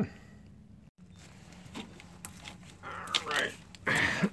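Small scrapes, rubs and clicks of a gloved hand handling a spin-on desiccant air dryer cartridge as it is threaded onto its housing, with a louder rustle about three seconds in.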